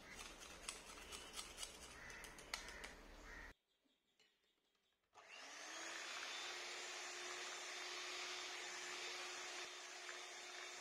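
Light clicks and taps as a measuring spoon tips powder into batter in a glass bowl, then a brief silence. About five seconds in, an electric hand mixer starts and runs steadily, its beaters whisking cheesecake batter.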